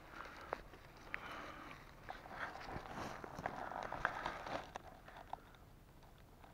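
Faint rustling and small crackles of dry leaves, pine needles and twigs on a mossy forest floor, with scattered soft clicks, as someone moves close over the ground.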